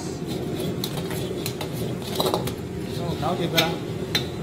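Metal ladle scraping and clanking against a wok as crabs are tossed in a thick sauce, with several sharp clanks spread through the few seconds over a steady low rush.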